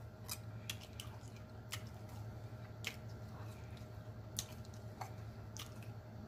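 A person chewing a mouthful of corn dog close to the microphone with the mouth closed: scattered faint wet smacks and clicks, about one every second or so.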